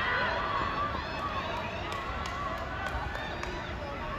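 Overlapping distant voices of players and sideline spectators calling out over an open field, with no single loud event. A few faint sharp ticks sound in the middle.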